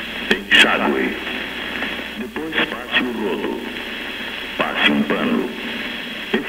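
Only speech: a voice in a few short phrases, thin-sounding and cut off at the top as if heard through a small radio speaker.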